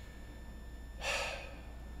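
A man sighs once, about a second in: a short, breathy, exasperated exhale.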